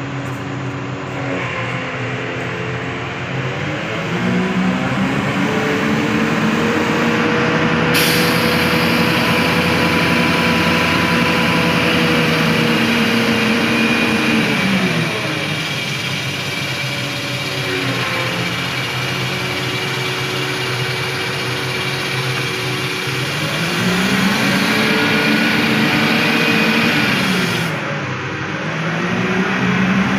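Crane truck's diesel engine revved up and held high for long stretches, falling back and rising again several times, as it runs the hoist during the lift. A steady hiss sits over it from about eight seconds in until near the end.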